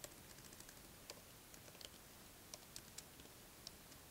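Faint, irregular key clicks of typing on a computer keyboard, a few keystrokes a second with uneven gaps.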